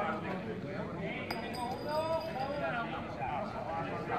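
A group of men talking in the open, with one sharp metallic clink about a second in that keeps ringing with a high tone for about a second.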